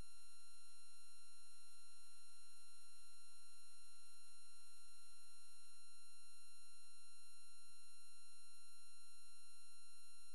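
A single steady high-pitched electronic tone over a faint hiss, unchanging in pitch and loudness.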